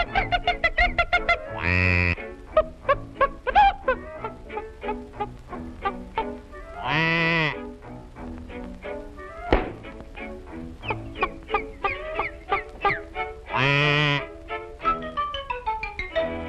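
Early-1930s cartoon orchestral score of quick, bouncy staccato notes, broken by three longer wavering, honk-like calls about 2, 7 and 14 seconds in.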